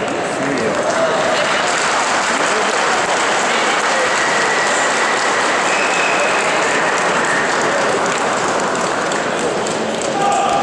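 Audience applauding steadily in a large sports hall, with a few shouts among the clapping.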